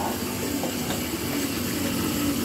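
Steady mechanical whir of cardio exercise machines being worked, with a faint steady low hum underneath.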